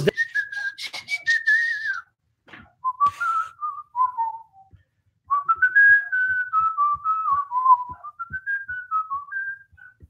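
A man whistling a tune, one clear note line stepping up and down in short phrases with gaps between them, a longer phrase in the second half. Faint low ticks come about three a second under the later phrases.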